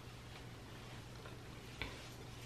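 Faint handling sounds of hands sectioning hair and flexi rods, with one sharp click near the end, over a low steady hum.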